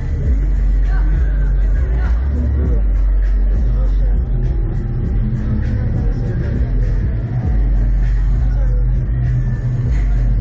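Steady, heavy low rumble on the onboard camera of a reverse-bungee ride capsule, easing briefly a few seconds in, with voices faintly in the background.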